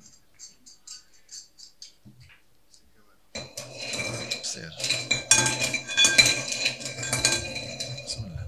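Draw balls clinking and rattling against a glass bowl as they are stirred. There are only faint scattered clicks at first, then the clatter turns loud and dense at about three seconds in, with a glassy ring.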